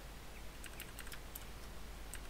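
Computer keyboard being typed on: a run of faint, irregularly spaced key clicks.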